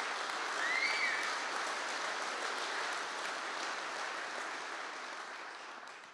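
Live audience applauding, swelling about a second in and slowly dying away, with a short high rising call from someone in the crowd near the start.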